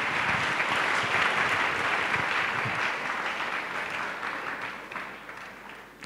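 A congregation applauding, the clapping fading away gradually over the last few seconds.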